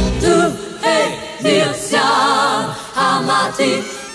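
Christian pop song in a vocal passage: several voices sing held, wavering notes together in short phrases. The bass drops out about a third of a second in, leaving the voices nearly bare.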